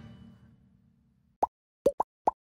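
The last held chord of a wind and brass band dies away over about a second into near silence. Near the end come two quick, sharp pitched plops, a pop sound effect on the cut to a title card.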